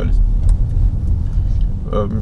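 Car driving at low speed, its road and engine noise heard from inside the cabin as a steady low rumble.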